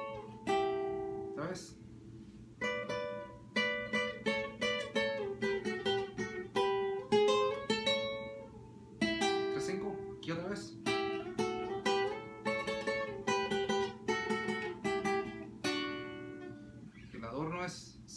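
Requinto guitar playing a fast lead line of single plucked notes. The notes come in several quick phrases with short pauses between them.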